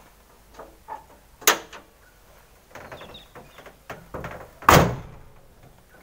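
Nissan GQ Patrol's steel bonnet, fitted with a bonnet protector, being lowered and slammed shut: a sharp knock about one and a half seconds in, some light rattling, then one loud slam near the end as it latches.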